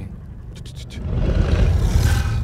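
Trailer sound design: a low rumble with a few short clicks, then a noisy whoosh that swells up from about a second in and is loudest near the end.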